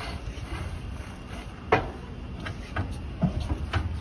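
A long-handled brush working on the back of a truck camper at a car wash, with a few sharp knocks, the loudest a little before the middle, over a steady low rumble.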